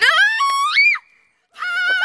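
A girl shrieking as an egg is smashed on her head: one high scream that climbs steeply in pitch for about a second and breaks off, then after a brief gap a second high, held shriek.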